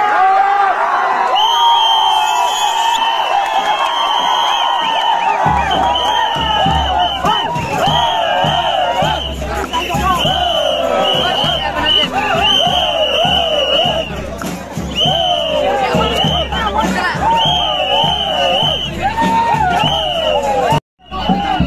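A large crowd of men shouting and cheering together, many voices overlapping with no break. A low rumble joins in about five seconds in.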